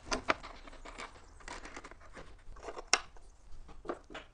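Hands handling wooden parts on a drill press table: scattered light clicks, taps and rustles, with one sharper click about three seconds in.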